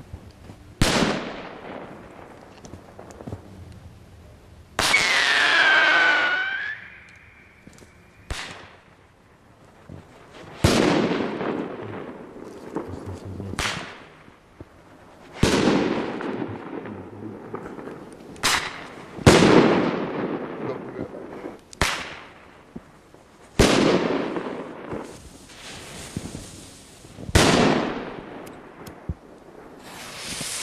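Firecrackers and small firework shells exploding one after another, about ten sharp bangs spread irregularly, each followed by a long echo. Just after the bang near five seconds a high whistle slides downward for a second or two.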